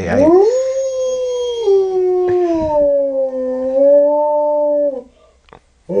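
Female gray wolf howling: one long howl that rises at the start, then falls slowly in pitch and breaks off about five seconds in, with a second howl starting right at the end.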